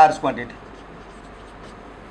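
Marker pen writing on a whiteboard, faint, after a last spoken syllable at the start.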